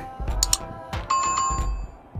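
Background music with a steady beat, and a bell-like ringing tone that starts about a second in and holds for most of a second.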